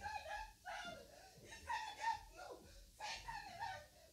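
A high-pitched human voice crying out in several short, wordless exclamations with brief pauses between them.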